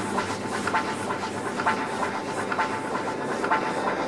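A quieter break in an electronic house DJ mix: a hissing noise texture with light, irregular percussive ticks and no heavy beat.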